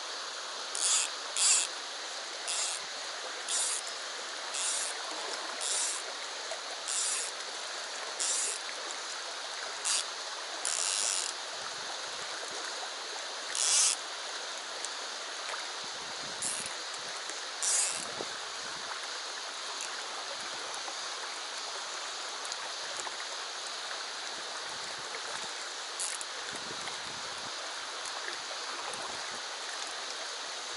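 A shallow river running over stones with a steady rush. Over it come short, sharp rasping sounds, about one a second for the first several seconds and then fewer, the loudest near the start and about fourteen seconds in.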